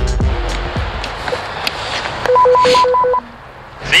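Apartment door intercom buzzer ringing: a quick run of about five short electronic beeps lasting just under a second, following the tail of a music jingle.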